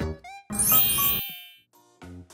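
Background music breaks off, and about half a second in a sparkling chime sound effect gives a bright twinkle that fades within about a second; new music starts at the end.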